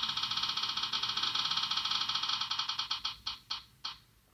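Virtual prize-wheel app ticking through a phone's speaker: a fast run of clicks that slows and spaces out over the last second as the spinning wheel comes to rest.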